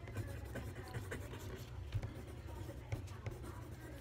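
Pencil writing on paper: light, irregular scratching strokes and small ticks as the tip moves across the page.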